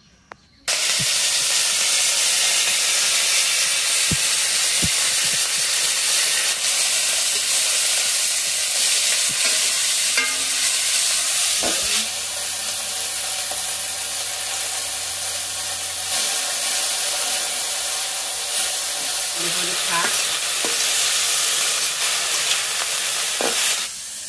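Chopped leafy greens sizzling in hot oil in a steel wok, starting suddenly about a second in, with a few light knocks of a spatula stirring them. The sizzle drops slightly in level about halfway through.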